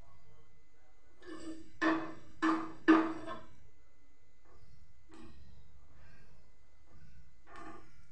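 A metal spatula knocking against a griddle: three sharp, ringing taps about half a second apart a couple of seconds in, then a few fainter taps and scrapes.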